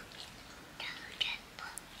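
Soft whispering, quiet and breathy.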